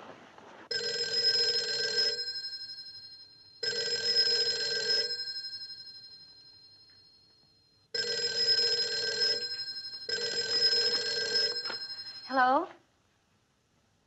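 Telephone bell ringing on a rotary desk telephone: four rings of about a second and a half each, the second ringing out and fading for a few seconds afterwards.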